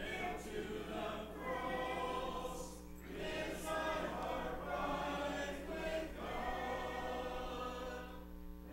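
A church congregation singing a hymn together in held notes, with a short break between phrases about three seconds in and again near six seconds.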